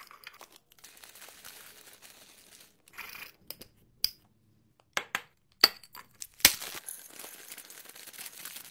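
Glass storage jar with a bamboo lid and wire clasp being handled: a faint rustle, then a series of sharp clicks and knocks of the lid and clasp from about halfway in, the loudest near the end. Near the end a plastic snack bag crinkles as nuts pour into the glass jar.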